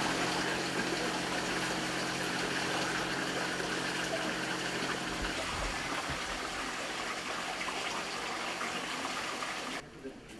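Steady rush of flowing water, with a low even hum underneath for the first half; it cuts off abruptly near the end.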